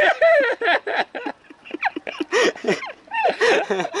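A young man laughing in short, strained bursts while holding a bent-arm static hang on a pull-up bar at his maximum.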